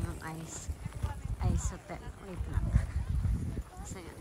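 Footsteps crunching on packed snow at a walking pace, with faint voices of people nearby.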